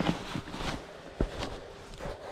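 Handling noise from a spinning rod and reel as a small perch is reeled and lifted out of an ice hole: a few light clicks and knocks over a low rustle.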